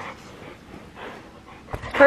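A dog breathing and panting right up against the microphone, with a soft knock near the end.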